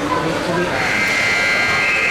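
Rink game buzzer sounding one long, steady electronic tone that starts about two-thirds of a second in, marking a stop in play. Voices chatter underneath.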